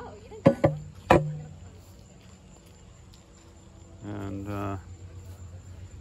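Two sharp knocks about half a second apart as an aluminium BMX fork is handled against a plywood tabletop, each with a short metallic ring. A faint steady high insect trill runs underneath.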